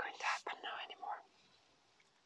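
A woman's breathy, whispered vocal sound for about the first second, then near silence.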